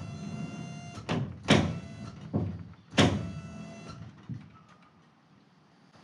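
A series of sharp metal clanks, about five in three seconds, the loudest ones each followed by a ringing metallic tone that dies away over about a second.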